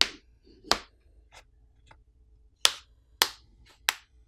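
Plastic catches of a Poco M4 5G's plastic back housing snapping loose one after another as a plastic pry pick is run along the seam: five sharp clicks with two fainter ones between them.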